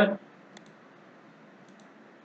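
Faint computer mouse clicks over low hiss. There are two quick clicks about half a second in and two more near the end.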